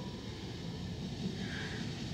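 Steady rushing noise of shopping carts being rolled across a parking lot, heard from inside a parked car and sounding like pouring rain.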